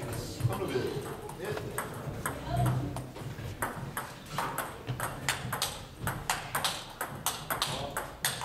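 Table tennis balls clicking off bats and tables: a string of sharp ticks, several a second and busiest in the second half, over a murmur of voices in the hall.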